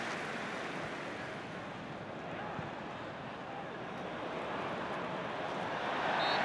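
Football stadium crowd noise: a steady, even noise of a large crowd with no single sound standing out, growing a little louder near the end.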